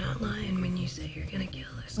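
Quiet, softly spoken film dialogue.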